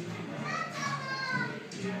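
Overlapping voices in a busy room, with one high-pitched voice standing out over the chatter from about half a second in.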